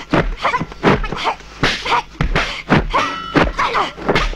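Martial-arts film fight sound effects: a rapid string of dubbed punch and kick impacts, about a dozen in four seconds, with short shouted yells from the fighters between the blows.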